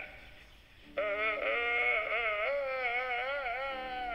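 After about a second of quiet, a high-pitched, quavering, drawn-out vocal wail starts and carries on without a break, bleat-like, from a man convulsed with laughter. A faint low steady hum sits underneath it.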